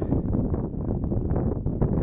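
Wind buffeting the microphone outdoors: a fluctuating low rumble with no pitch.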